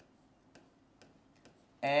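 A few faint, short clicks of a marker tip on a whiteboard as letters are written, then a man's voice starts near the end.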